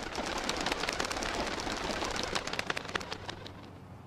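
A flock of pigeons flying close past, wings clattering and flapping in a rapid run of claps that fades away over the last second.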